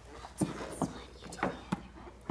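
A few short, sharp knocks and clicks, four of them spread over two seconds, as hands handle a hard black case on the floor.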